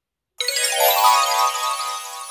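A bright, ringing electronic chime sound effect that comes in about half a second in and slowly fades, marking the turn to the next page of the storybook.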